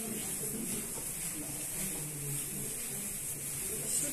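Indistinct voices of people talking in a room, under a steady high hiss.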